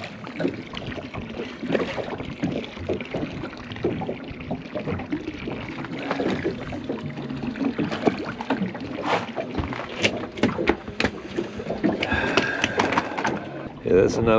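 Water splashing and knocking against a small boat as a mulloway is landed and handled. A run of sharp knocks and clicks comes about nine to eleven seconds in.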